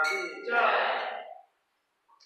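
Small brass hand cymbals (karatalas) struck twice in quick succession, ringing and dying away within about a second and a half.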